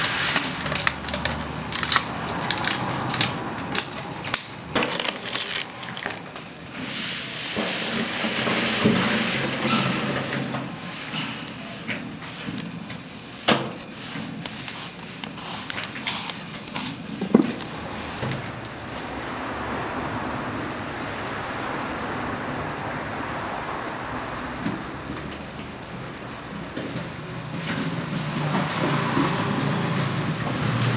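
Stiff, crusted fibrous sculpture material being handled, pulled and torn by hand, giving many sharp crackles and rustles for the first half, then a steadier rubbing and scraping with a few knocks.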